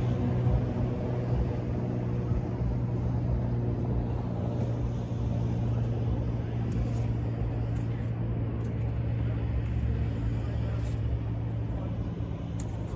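A steady, low mechanical hum that holds one pitch throughout, like an idling engine or running machinery, with a few faint ticks in the second half.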